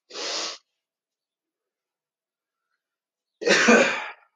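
A man's short, heavy breath out, then near the end a louder cough, as he catches his breath after a set of explosive squats.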